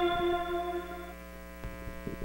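A sustained electronic-organ chord from intro music fading out over about a second, leaving a low steady electrical hum with a couple of faint clicks near the end.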